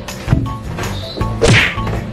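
Background music with two sudden added sound effects: a sharp smack about a third of a second in, and a louder falling whoosh about a second and a half in.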